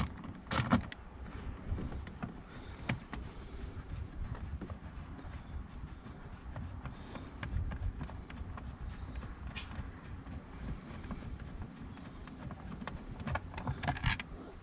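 Light handling noises as the 13 mm battery hold-down bolt is undone: a few clicks from the socket wrench just after the start, then faint scattered clicks and rubbing as the loosened bolt is turned out by hand.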